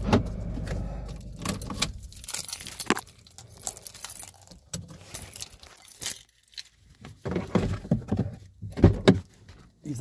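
Car keys jangling and clicking as they are handled in a car's cabin, with sharp knocks near the end. A low engine hum at the start dies away within the first two or three seconds.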